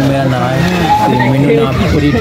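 Several young men's voices talking and calling over one another.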